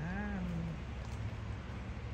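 A woman's voice trailing off in one long drawn-out word, then a steady low background hum.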